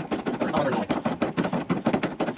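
Hand ratchet clicking in a quick, uneven run as it is swung back and forth on a socket and extension, tightening a rear shock absorber's mounting bolt.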